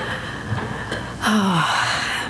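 A woman laughing breathily close to a microphone, with a falling voiced sigh about a second and a half in.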